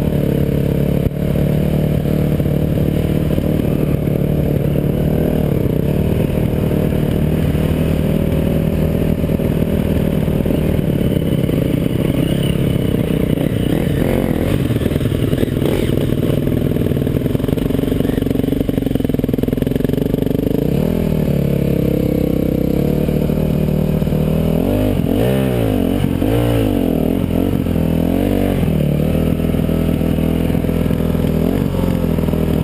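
The rider's own dirt bike engine heard close up, running steadily under way along a trail. From about twenty seconds in its pitch swings up and down in repeated short revs as the bike comes to the start area.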